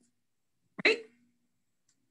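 One short, abrupt spoken word, "right", about a second in, otherwise near silence.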